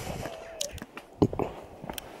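Footsteps on a dry dirt track: a few irregular steps, the loudest about a second in.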